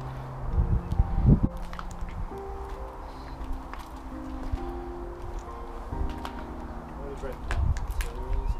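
Slow background music of soft held notes changing about once a second, with low thumps and light clicks of footsteps over rubble.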